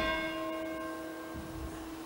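A church bell struck once at the very start, its ring fading slowly while a low hum lingers on. It is rung at the consecration of the wine in the communion liturgy.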